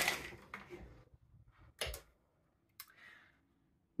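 A rustling rattle fades out in the first second, then a faint sharp click about two seconds in and another about a second later, from a wooden double-hung window and its blinds being handled.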